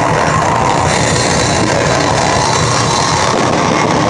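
Live rock band playing loud, with electric guitars and drums, held steady at full volume.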